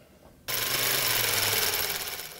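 Rapid mechanical clatter of a running film projector, starting abruptly about half a second in and easing near the end.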